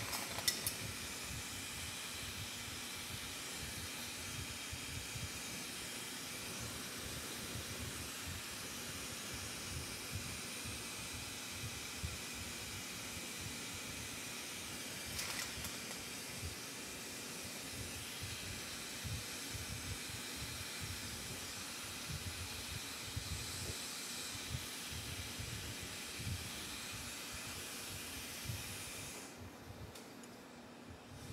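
Glassworking bench torch burning with a steady hiss, with a faint click about halfway through.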